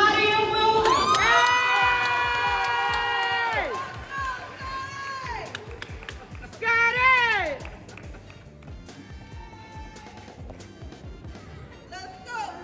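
Audience cheering and shouting. A long, high held shout runs from about a second in to nearly four seconds, and a short whoop that rises and falls comes about seven seconds in. The rest settles into quieter crowd noise.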